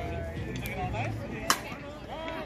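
A softball bat striking a pitched ball: a single sharp crack about a second and a half in, with voices from the crowd around it.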